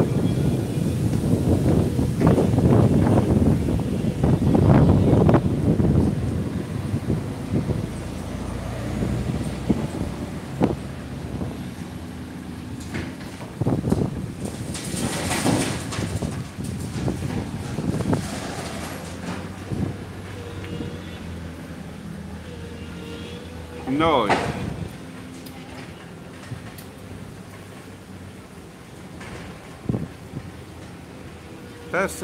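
Wind buffeting the phone's microphone, loud for about the first six seconds, then easing to a quieter outdoor background once out of the wind.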